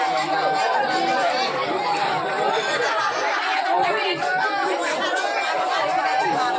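Several people chattering at once, with a bamboo transverse flute playing long held notes under the talk, clearest near the start and again at the end.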